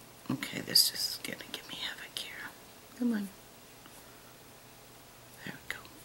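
A person whispering and muttering under their breath for about two seconds, then a short voiced 'mm'-like sound with a falling pitch, and a couple of faint clicks near the end.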